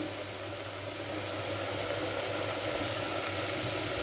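Chicken and masala cooking in an aluminium pressure cooker on the stove, giving a steady, fairly quiet sizzling hiss with a faint low hum beneath it.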